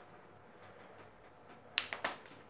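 Plastic water bottle crackling in a hand as it is gripped and lifted: mostly quiet, then three sharp clicks in quick succession near the end.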